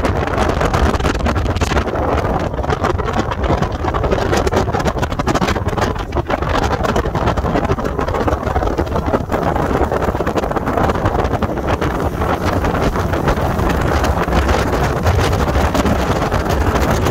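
Yamaha 50 hp outboard motor running steadily at speed, driving a small speedboat, with wind noise buffeting the microphone.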